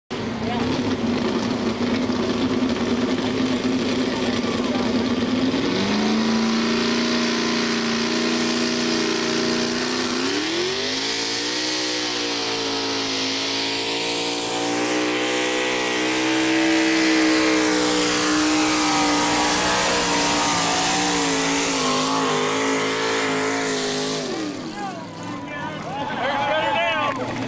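Two-wheel-drive Chevy pulling truck's engine run hard under load down the track. Its pitch holds, steps up about six seconds in, climbs again near the halfway point and stays high with a slight waver, then drops away as the throttle comes off near the end.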